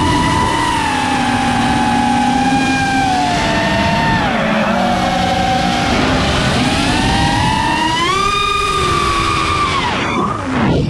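Drone's electric motors and propellers whining loudly, the pitch sliding with the throttle: slowly falling, dipping about four and a half seconds in, climbing about eight seconds in, then dropping sharply near the end.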